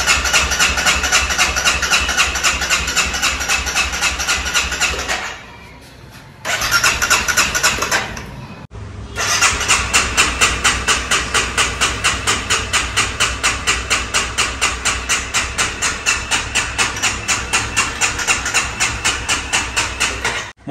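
Electric starter cranking a Honda CBR250R's single-cylinder engine in three goes, a long one, a short one and a longer one, with an even pulsing rhythm, each stopping abruptly. The engine does not catch.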